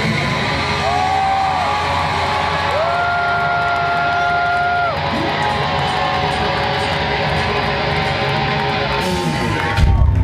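Rock band playing live through a club PA, heard from the crowd: electric guitar holding long notes that bend up into pitch and drop away at their ends, over a steady band wash. A loud hit comes just before the end as the full band comes back in.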